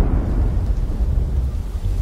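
Thunderstorm: a low, continuous rumble of thunder with rain falling.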